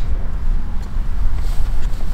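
A steady low rumble of outdoor background noise, with no clear sound from the platform.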